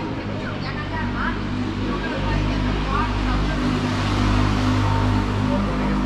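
Street sound dominated by a motor vehicle's steady engine drone, growing louder about two seconds in, with passersby's voices talking faintly.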